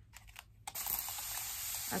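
Continuous fine-mist water spray bottle hissing steadily as it mists a makeup sponge, the spray starting suddenly about two-thirds of a second in after a few faint clicks.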